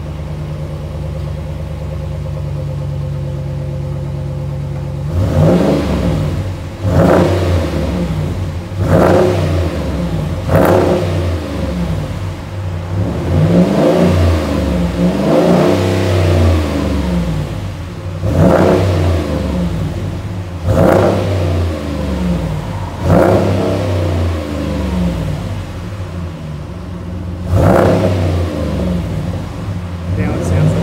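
Ram 1500's 5.7-litre HEMI V8 idling through a high-flow KM sports muffler and twin tailpipes, then revved repeatedly from about five seconds in. Around nine throttle blips, each rising and falling back to idle, with a longer run of revs in the middle.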